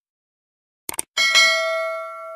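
Subscribe-button animation sound effect: a quick double mouse click about a second in, then a bright notification-bell chime, struck twice in quick succession, that rings on and fades.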